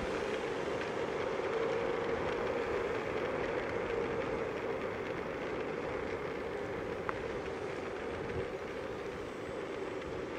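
Small DJI Flip quadcopter's propellers humming steadily in flight, easing off slightly toward the end.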